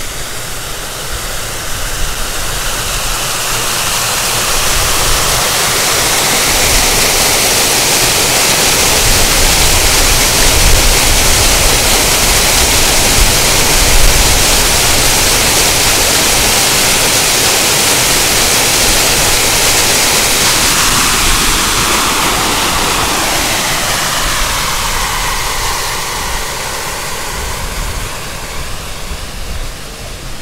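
Water rushing down a small man-made stone cascade, a steady splashing that grows louder toward the middle and fades away over the last third.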